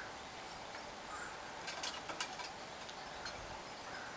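Faint outdoor hiss with a few soft, distant bird calls. A short run of sharp clicks comes about halfway through.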